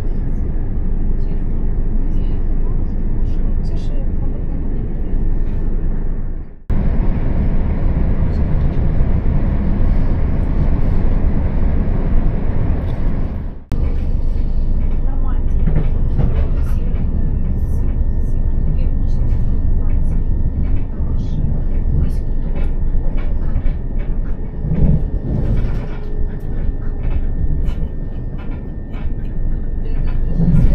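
Interior running noise of a Class 375 Electrostar electric multiple unit at speed: a steady low rumble of wheels on rail and the carriage's hum. The sound breaks off and changes abruptly twice, and a faint steady high tone runs through the second half.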